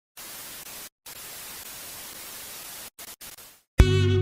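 Steady hiss of TV static (white noise). It drops out briefly twice, then sputters and dies away just before music with a heavy beat starts abruptly near the end.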